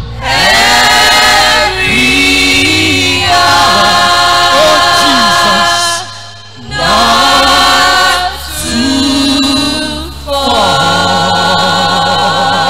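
Youth choir singing a gospel song together in long held phrases, with a brief pause about six seconds in and another near ten seconds.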